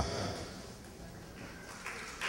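Low, even room tone of a hall, with no distinct sound event.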